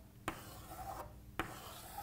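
Chalk scraping on a chalkboard as circles are drawn, with three sharp taps where the chalk strikes the board.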